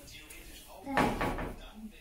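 A door shutting once with a thud about a second in.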